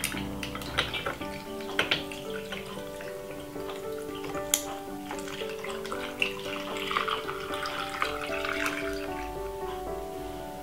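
Cranberry juice poured from a plastic jug into a tall glass over ice: running liquid with a few sharp clinks of ice, under background music with held notes.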